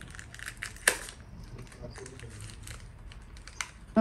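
Fingers picking and pulling at a small, tightly wrapped cardboard parcel's packaging: faint rustling and crinkling with small clicks, and a sharp crackle about a second in and another near the end.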